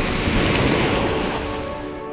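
Ocean surf: a wave breaking and rushing in, swelling in the first second and fading near the end, over soft sustained music.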